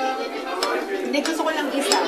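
Metal fork clinking and scraping against a dessert plate: a few sharp clinks, the loudest near the end, over restaurant chatter and background music.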